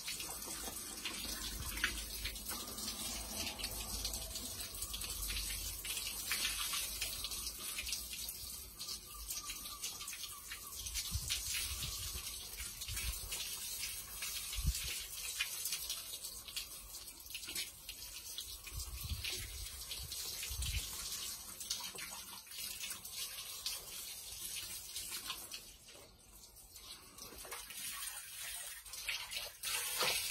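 Garden hose spraying water onto a foam filter sponge from a fish tank pump filter, washing the trapped gunk out of it: a steady hiss of spray, dropping away briefly a few seconds before the end.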